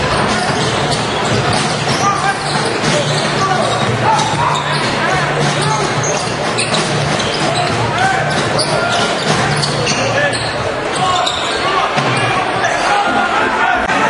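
Game sound from a basketball arena: steady crowd noise and voices, with a basketball being dribbled on the hardwood court.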